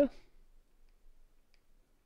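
Near silence with a few faint clicks of a stylus tapping on a drawing tablet as a number is written.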